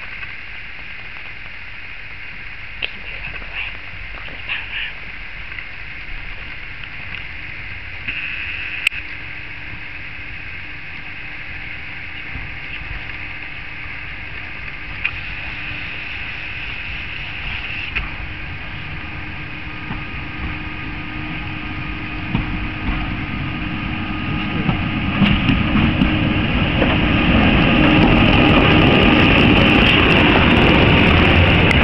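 Diesel rail crane running along the track toward the listener, its engine growing steadily louder over the last several seconds as it comes close.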